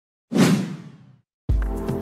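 A swoosh sound effect starts about a third of a second in and fades away over about a second. Background music with a steady beat of about two strikes a second starts near the end.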